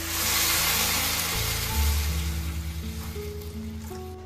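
Water poured into a hot pan of frying onions, tomatoes and chillies, setting off a loud sizzle that is strongest at first and fades away over the next few seconds. Background music with steady low notes plays throughout.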